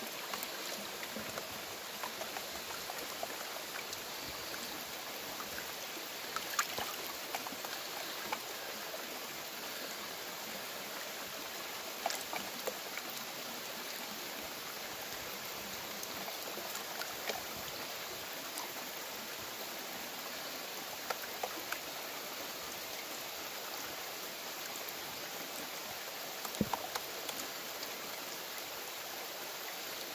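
Creek water running steadily around and through a plastic gold pan held in the current, water swishing as the pan is washed. A few brief faint knocks or taps come through it now and then.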